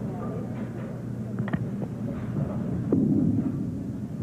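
Bowling-alley ambience, a low rumble with faint audience murmur; about three seconds in it grows louder as a bowling ball is delivered onto the wooden lane and rolls.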